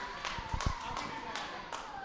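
A few low thuds of feet on the wrestling ring's mat and scattered sharp claps from the small crowd, over faint hall noise.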